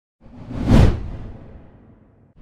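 A whoosh sound effect that swells to a peak just under a second in, with a deep rumble beneath it, then fades away.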